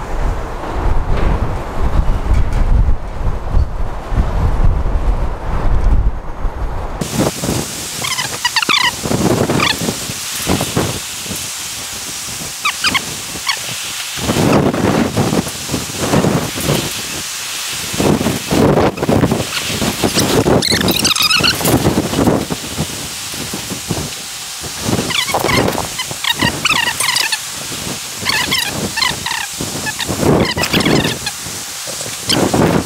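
Outdoor ambience: a low rumble for the first several seconds, then an even hiss with birds chirping in short runs every few seconds, over buffets of wind on the microphone.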